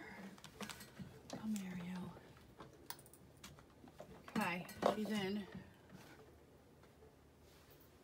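A woman's voice making two short wordless sounds, amid scattered light clicks and taps of handling a printer's power cord as it is plugged in.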